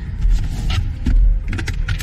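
Rear-seat fold-down centre armrest being lowered and its storage lid opened by hand: a few short plastic clicks and knocks, about three quarters of a second in and twice near the end, over low thumps of handling.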